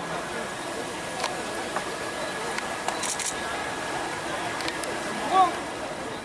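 Outdoor crowd of many people waiting together, a steady murmur of background noise with a few faint clicks and one short pitched call about five seconds in.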